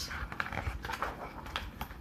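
Soft rustling and scattered light clicks of a picture book being handled, its page being turned.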